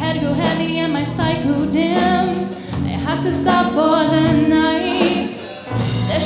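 Live band song: a female singer's lead vocal, holding and bending long notes, over a rock band of electric guitars, bass guitar and drum kit.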